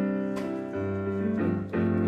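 Digital piano playing a slow hymn introduction in sustained chords, with low bass notes joining about a second in and the chord changing twice near the end.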